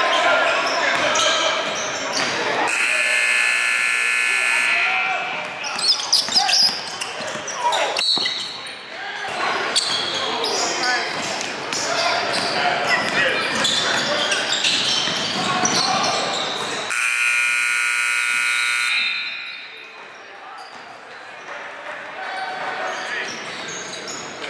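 Basketball game in a gym: a ball bouncing on the hardwood and voices around the court. A scoreboard horn sounds twice, about two seconds each, once a few seconds in and again near seventeen seconds in. The second blast is the end-of-period horn.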